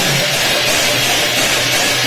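Odia pala devotional music: large brass hand cymbals clashed continuously in a dense ringing wash, with a two-headed barrel drum underneath.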